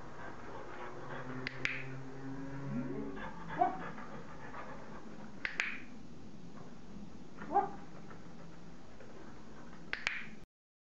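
A dog-training clicker clicks three times, about four seconds apart, each click marking a completed turn, with short rising dog sounds in between.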